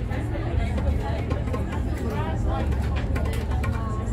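Steady low drone of a river tour boat's engine, with people's voices talking over it.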